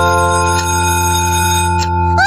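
Electronic chime chord of a cartoon school bell, held steady and signalling that class time is up. It stops shortly before the end.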